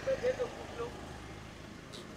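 Street background at a busy crossroads: a low, steady hum of road traffic, with faint voices in the first second.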